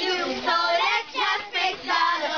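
A group of children singing together, phrase after phrase with brief breaks between lines.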